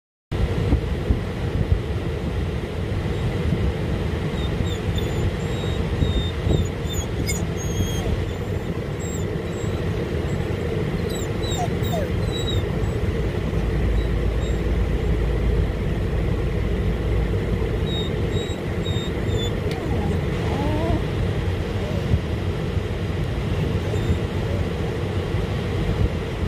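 Steady low rumble inside a parked van's cabin, with a few faint, short high whines from the dog waiting on the seat.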